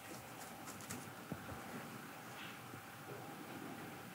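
Quiet room tone with a faint steady hum and a single soft click a little over a second in.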